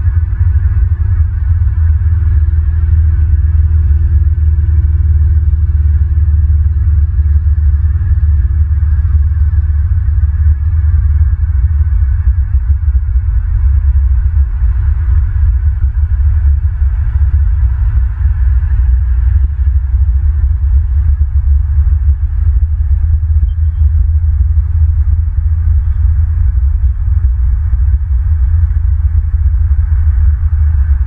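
Steady loud low rumble with a faint hiss above it, picked up by the nest-cam microphone.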